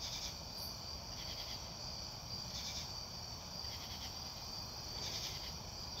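Night crickets chirring in a steady high-pitched chorus, swelling in louder pulses about every second and a quarter.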